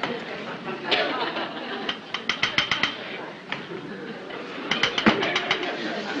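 A metal spoon clinking against a metal cooking pot and dishes as food is served out, with a quick run of ringing clinks about two seconds in and scattered single clinks around it.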